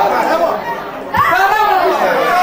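Football spectators shouting and calling out, several voices overlapping, with one long drawn-out shout in the second half.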